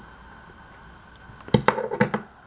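A quiet stretch, then about a second and a half in a quick cluster of sharp clicks and knocks as a folding bicycle multi-tool is put down and the tool bottle's hard plastic insert is picked up.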